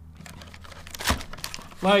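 Plastic ice cream bar wrapper and cardboard box being handled, a soft crinkling with one sharper crackle about a second in.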